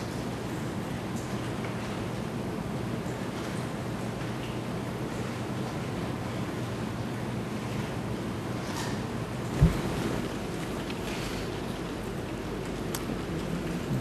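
Steady hiss and low hum of an open courtroom microphone feed, with one dull thump about ten seconds in.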